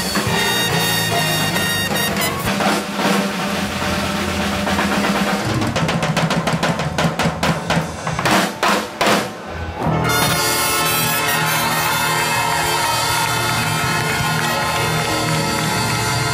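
Band music driven by a drum kit, with a run of sharp drum hits and short breaks in the middle, then the full band playing on steadily from about ten seconds in.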